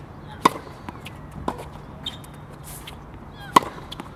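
Tennis racket striking the ball on serves: two sharp, loud hits about three seconds apart, with a fainter knock between them.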